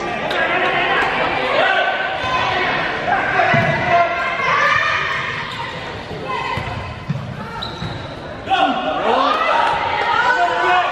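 Handball game sounds echoing in a large sports hall: the ball bouncing on the court under a steady mix of players and spectators calling out, getting louder about eight and a half seconds in.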